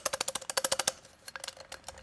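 The ring burr carrier of an OE Lido OG hand grinder clicking and rattling inside the housing as the grinder is shaken: a quick run of clicks for about the first second, then a few scattered ones. Its four retaining screws are backed off half a turn, so the Delrin carrier and ring burr are loose and free to move.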